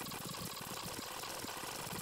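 Steady background hiss and low hum of room tone picked up by the microphone, with no distinct event.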